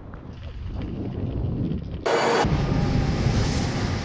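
Wind rumbling on the action camera's microphone while riding a chairlift. About halfway in comes a short, loud burst of hiss, then a louder steady hiss and rumble as the chair reaches the top unload ramp.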